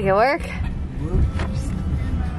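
Steady low rumble of a car driving, heard from inside the cabin, with a brief voice sound right at the start.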